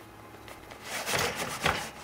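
A pony cart's extendable axle being slid outward in its frame tube: a rough metal scrape starting about a second in, ending with a sharp knock.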